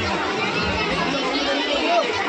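Crowd of children and adults chattering, many voices talking over each other at once.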